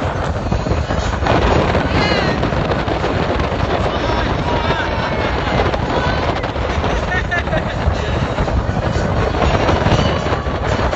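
Wind buffeting the microphone in a steady rush, with indistinct voices of people on deck underneath.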